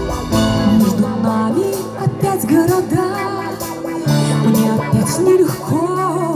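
Live pop band playing an instrumental passage through a concert PA. Sustained low chords come in just after the start, under a melody line that slides up and down in pitch.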